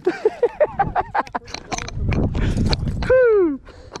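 A man laughing in short bursts, then the splashing of a small largemouth bass thrashing at the surface as it is reeled to the kayak and lifted out, ending in one falling drawn-out exclamation near the end.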